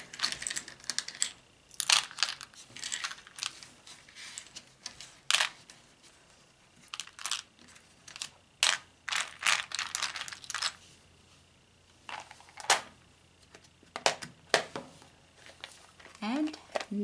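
Small plastic miniature toys clicking and clattering against one another and the plastic box as they are shifted around inside a clear plastic storage box, in scattered runs of sharp clicks with quiet gaps between.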